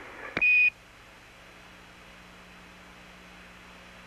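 A click and a short high beep, the Quindar tone that NASA's air-to-ground loop sends when the ground releases its transmit key, marking the end of a transmission. It is followed by a steady faint radio-link hiss with a low hum.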